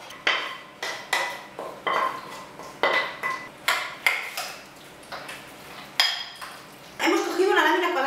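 A metal spoon stirring and scraping in a white ceramic bowl, mixing sautéed spinach with requesón, with sharp clinks against the bowl's side, irregular and roughly a second apart. A woman's voice starts talking near the end.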